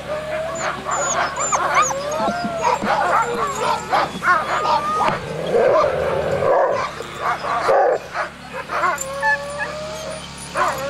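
A pack of harnessed sled dogs calling over one another: high whines and howls that rise and fall, some held for a second or more, mixed with sharp yips and barks throughout.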